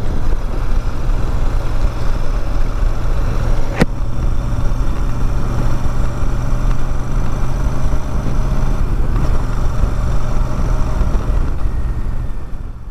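Royal Enfield Super Meteor 650's parallel-twin engine running at a steady cruise on the move, under an even rush of wind and road noise. There is one sharp click just under four seconds in, and the engine note eases slightly about nine seconds in.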